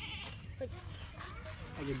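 Faint, scattered voices with short pitched calls, and a man's voice beginning near the end.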